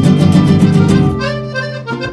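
A band playing an instrumental intro: accordion over strummed guitars and bass. About a second in the strumming stops and a held accordion chord fades out.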